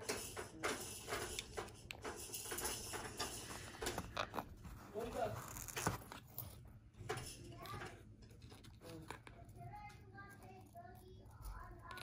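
Light clicks and rustling as a gold chain bracelet is handled and lifted from its gift box. Faint voices can be heard in the background, mostly in the second half.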